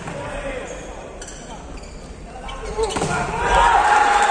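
Volleyball being struck and hitting the court, the sharp smacks echoing in a large indoor hall. About three seconds in, loud shouting from the players rises.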